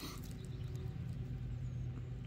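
Quiet outdoor background with a steady low hum and no clear sound standing out.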